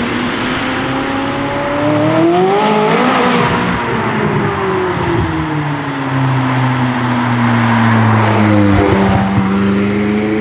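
McLaren 600LT's twin-turbo V8 through an Fi aftermarket exhaust, revving up to a peak about three seconds in, then its pitch sinking slowly as the car comes closer. A short crackle of pops comes near the end, and the engine revs up again as it pulls away.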